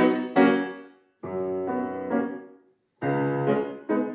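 Grand piano playing chords in short phrases: two struck chords, a held chord that changes twice, a brief pause, then a further run of struck chords near the end.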